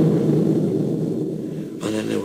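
A low rumble that slowly dies away, with a man starting to speak near the end.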